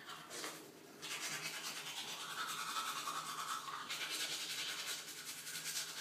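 Manual toothbrush scrubbing teeth with quick back-and-forth strokes, starting about a second in.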